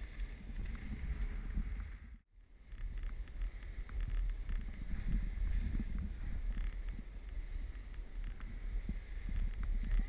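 Wind buffeting an action camera's microphone during a downhill ski run, a low rumbling rush, with skis scraping and hissing over packed snow. The sound cuts out for a moment about two seconds in.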